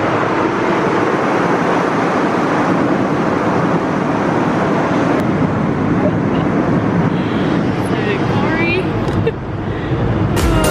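Steady rushing cabin noise of a jet airliner in flight, even and unbroken, with a faint voice near the end.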